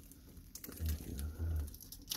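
Clear protective plastic film being lifted and peeled off a painted plastic RC truck body, giving a faint crinkling with small ticks and a few dull handling bumps in the middle.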